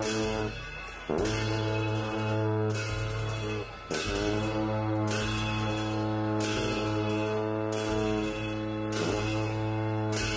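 Tibetan ritual dance music: a sustained low, horn-like drone that breaks off briefly about half a second in and again near four seconds, with crashing strikes, like cymbals, about once a second.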